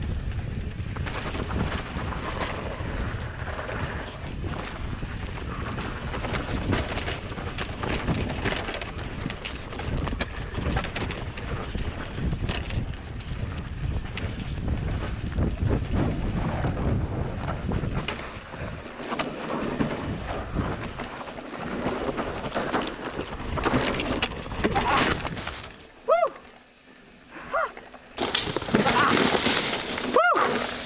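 Rocky Mountain Slayer mountain bike descending a loose dirt trail at speed, recorded from a mic on the bike: continuous tyre noise on dirt with chain slap and frame rattle and many sharp knocks over roots and rocks. The noise drops to a brief lull near the end, then comes back loud.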